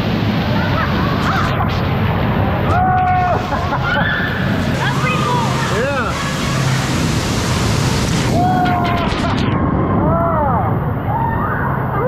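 Rushing water from a waterfall pouring into a lazy river, a steady loud hiss with voices calling out over it in short rising-and-falling calls. The high part of the water hiss drops away suddenly about three-quarters of the way through.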